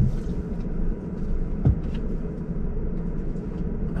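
Road and tyre rumble inside the cabin of a moving Lucid Air electric sedan, with a short thump at the start and another about a second and a half in.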